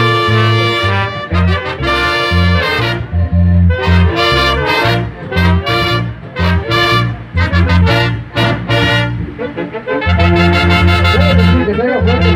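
Brass band music: trumpets and trombones over a pulsing bass line. Through the middle the band plays short, separate blasts with gaps between them, then from about ten seconds in it plays on full and steady.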